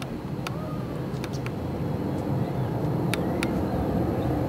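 Distant jet-engine rumble of the Boeing 747 carrying Space Shuttle Endeavour, growing steadily louder as the aircraft approaches.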